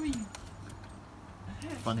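A person's voice: a low held note that falls away at the start, then a short spoken word near the end. Between them is faint background with a few light clicks.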